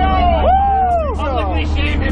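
Excited voices rising and falling in pitch inside a small jump plane's cabin, over the steady drone of its engine and propeller as it taxis.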